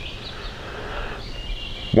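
Woodland ambience: a steady background hush, with a faint high-pitched trill from a bird in the last half second or so.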